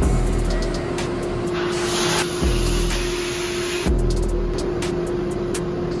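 Sandblaster running, its compressed-air nozzle blasting grit at a small engine part with a steady hiss and a stronger burst about two seconds in, stripping the old finish as prep for powder coating. Background music plays under it.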